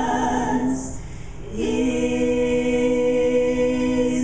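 Three women singing together in harmony: a sung phrase, a short break about a second in, then one long held chord.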